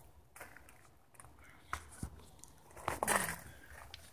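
Faint rustling and scattered light clicks of a handheld camera being moved through garden foliage. About three seconds in there is a short, low vocal sound from the person filming.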